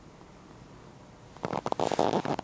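Quiet room tone, then about a second and a half in, a sudden run of irregular rustling, scraping and clicks: handling noise from the camera being moved and turned.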